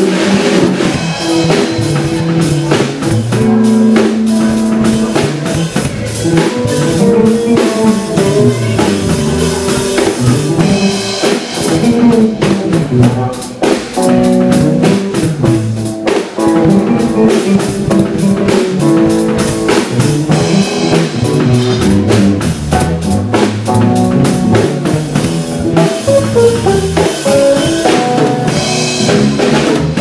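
Live instrumental break of a blues band: electric guitar playing melodic lines over electric bass and a drum kit keeping a steady beat.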